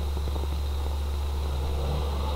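Steady low drone of a car driving along a road, with an even hiss over it and no change in pitch.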